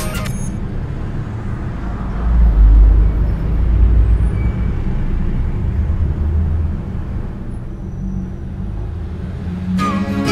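A low engine rumble, swelling louder about two seconds in and then holding steady.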